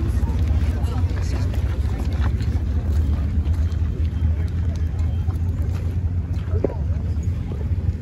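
Wind buffeting the microphone outdoors, a steady low rumble, with the faint voices of a walking crowd underneath.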